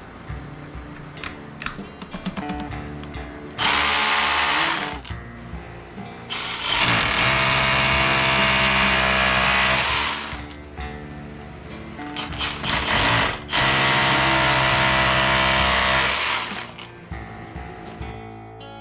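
Cordless drill boring into a concrete block wall in three runs of a few seconds each, the longest about four seconds, the motor whining under load. Background music plays throughout.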